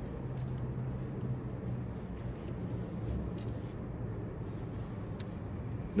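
Steady low background hum with a few faint ticks, without speech.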